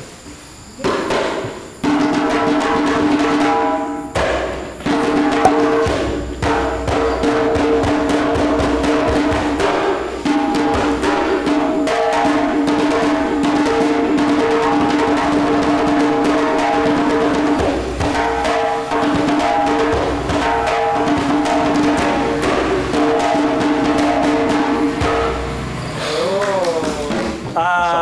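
Djembe played with bare hands in a quick run of slaps and tones, over steady sustained background music.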